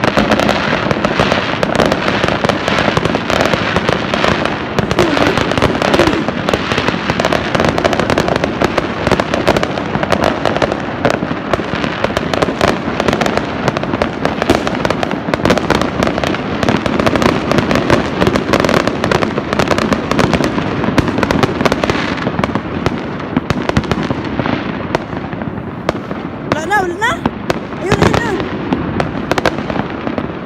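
Many fireworks and firecrackers going off at once: a dense, continuous crackle of rapid bangs and bursts, easing slightly in the last few seconds.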